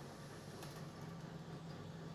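Quiet room tone with a faint, steady low hum and no distinct sound events.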